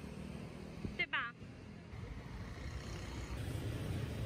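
Street traffic of motor scooters and cars, the low rumble of motorbike engines growing louder through the second half as they pass close by. A brief sliding pitched sound cuts in about a second in.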